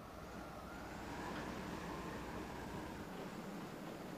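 Faint wind sound effect: a soft hiss with a whistling tone that rises gently and falls away.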